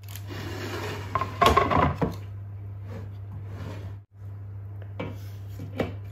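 Kitchen handling noise: a metal baking tray and a large roasted bone-in beef rib being moved onto a wooden cutting board, with scraping and knocks loudest about a second and a half in, then a couple of sharp clicks near the end.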